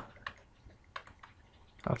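A few faint, scattered clicks and taps of a stylus on a pen tablet as a word is handwritten.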